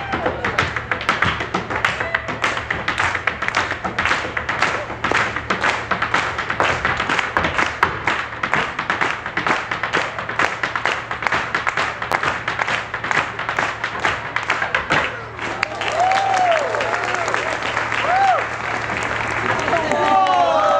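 Hard-shoe Irish step-dancing: rapid, rhythmic heel and toe taps on a wooden stage over a traditional dance tune. The taps stop about fifteen seconds in, and applause and whoops from the audience follow.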